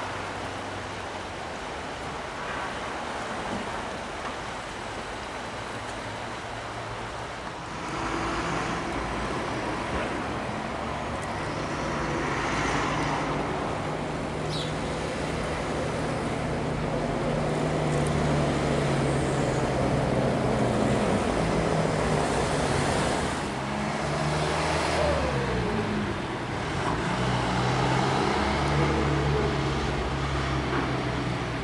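Road traffic: several cars pass in turn, each swelling and fading, louder from about eight seconds in.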